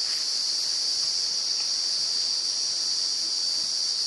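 Steady high-pitched insect chorus, an unbroken shrill drone.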